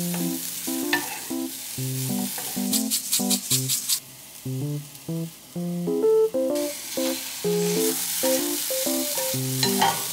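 Broccoli sizzling in a hot frying pan while a wooden spatula stirs it, with a quick run of taps about three seconds in. The sizzle drops back for a couple of seconds midway, then returns. Soft background music plays throughout.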